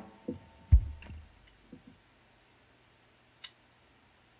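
Amplified electric guitar being handled between songs: a short plucked note, then a few thumps and knocks through the amp, the loudest a deep thump under a second in, and one sharp click near the end.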